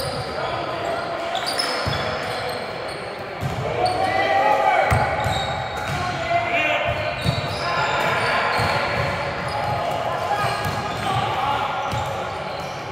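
Volleyball rally in a large echoing gym: players shouting and calling to one another while the ball is struck by hand several times with sharp thumps.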